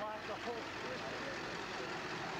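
Steady street noise from a vehicle engine running close by, with a few snatches of voices near the start.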